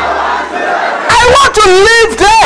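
A congregation praying aloud together, then a loud shouted prayer voice with a strongly wavering pitch from about a second in, over a steady low hum.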